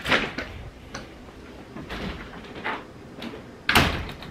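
An interior door being opened and handled: a knock at the start, a few small clicks and rustles, then a louder thump near the end.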